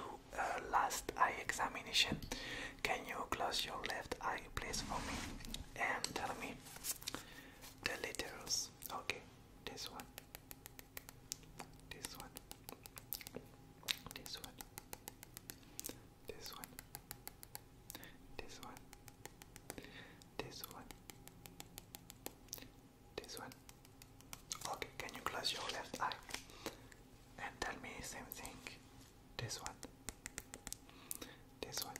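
Soft close-up whispering, with a long middle stretch of many quick, faint clicks.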